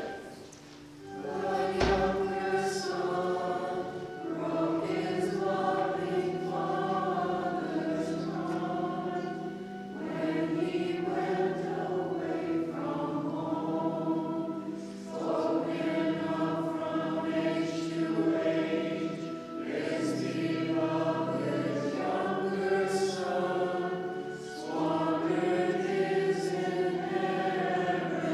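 Several voices singing a liturgical hymn together in long sung phrases, with short pauses between lines. There is a single low knock about two seconds in.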